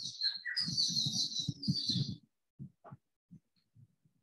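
A bird chirping in quick trills for about two seconds.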